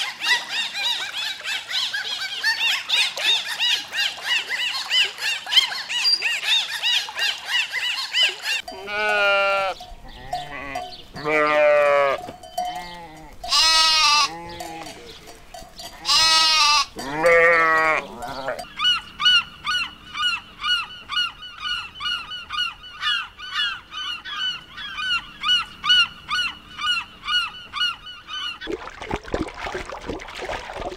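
Bottlenose dolphins chattering in a fast stream of high chirps and whistles for the first third. Then sheep bleat about five times in wavering calls of about a second each, followed by an unidentified animal call repeated quickly and evenly until near the end.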